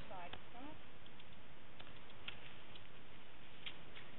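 A person's voice briefly at the start, then a steady background hiss with a few faint, scattered clicks.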